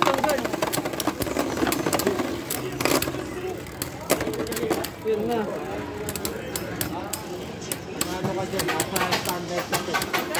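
Two Beyblade Burst tops spinning in a clear plastic stadium, striking each other and the stadium wall with many sharp clicks over a continuous scraping whir.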